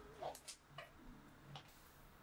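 Near silence with a few faint, light ticks and taps from a bundle of dried twig branches being handled.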